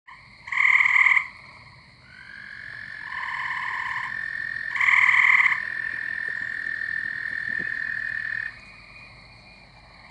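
Gray treefrogs calling: two loud, short, pulsed trills about a second in and again about five seconds in, with a fainter one between them. Under them an American toad gives one long, steady, high trill lasting about six seconds.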